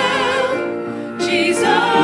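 Several voices singing a worship-song chorus in harmony with vibrato, over a band with keyboard and guitar. A short break between phrases comes about halfway through before the next line begins.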